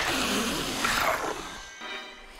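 Sound-effect call of a baby Majungasaurus, a rough animal-like cry lasting about a second and a half before fading, over background music.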